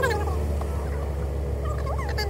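A man laughing briefly at the start, a short falling chuckle over the steady low hum of the car's cabin and engine while stopped in traffic.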